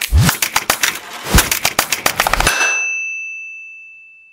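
Title-sequence sound effects: dense crackling and clicking with three deep booms, cut off suddenly about two and a half seconds in by a single bell-like ding that rings on and slowly fades.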